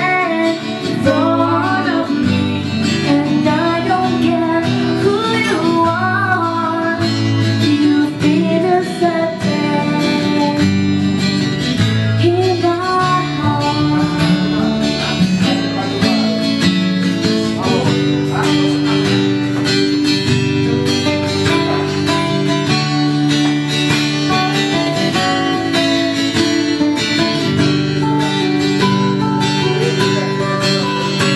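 A woman singing a song to acoustic guitar accompaniment. The voice drops out about halfway through and the guitar plays on alone.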